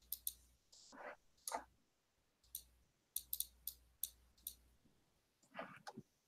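Faint computer mouse clicks, about ten short sharp clicks at irregular intervals, with a quick cluster a little past the middle.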